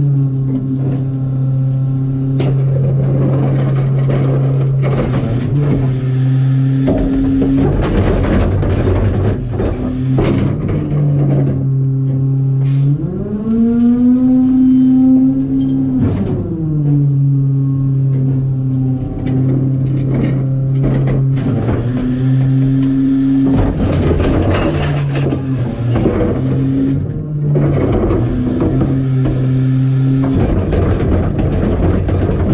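Garbage truck engine idling steadily, heard at the rear-loader hopper, with repeated knocks and thuds of trash bags and carts hitting the hopper. Near the middle the engine speeds up for about three seconds, then drops back to idle.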